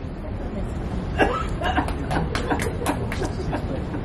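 Women's voices in short, low snatches with bits of laughter, starting about a second in and stopping near the end, over a steady low rumble.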